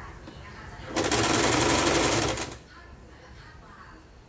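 Janome sewing machine running a short burst of fast, even stitches through fabric, starting about a second in and stopping abruptly after about a second and a half.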